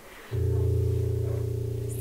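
A piano chord with a strong low bass note, struck about a third of a second in and left ringing.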